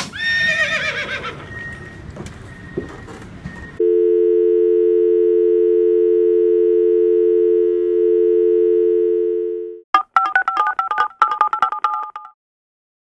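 Telephone dial tone, a steady two-note hum lasting about six seconds, followed by a quick run of short two-tone telephone beeps. Just before it, at the very start, a brief high cry falls in pitch.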